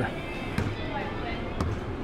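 Open-air ship-deck ambience: a steady wash of wind and background noise with faint music, and two light knocks about a second apart.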